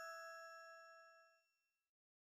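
The fading ring of a bright, bell-like chime: several clear tones dying away together, gone about a second and a half in.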